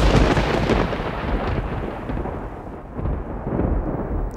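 Dramatic thunder-like rumble used as a sound effect: a sudden loud swell of noise fades over a couple of seconds into a low rumble, which swells again near the end.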